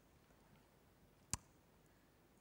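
Near silence, broken once by a single short, sharp click a little past halfway.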